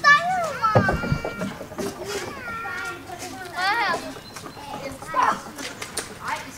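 Children's voices calling and chattering in high, rising and falling tones, with a few short knocks about a second in.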